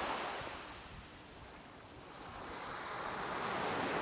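Small waves washing up onto a sandy beach: a steady hiss of surf that fades in the middle and swells again toward the end as the next wave comes in.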